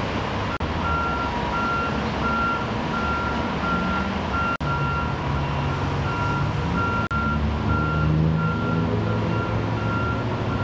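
A vehicle's reversing alarm beeping steadily, about one and a half beeps a second, over continuous freeway traffic noise. The sound drops out for an instant three times.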